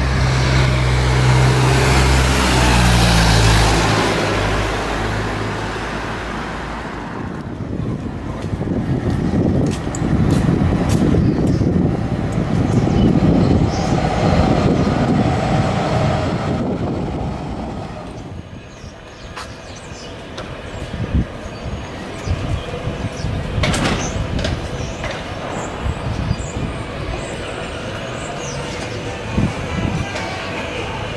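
Street traffic sounds: a vehicle engine running close by at first, fading out within the first several seconds. It is followed by the rush of passing traffic and then quieter street noise with scattered short knocks.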